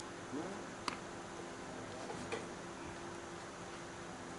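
Quiet outdoor ballfield ambience with a faint distant voice early on, one sharp click a little under a second in and a fainter click past two seconds.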